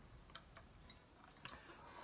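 Near silence: room tone with a few faint clicks as the electric guitar is handled and tilted.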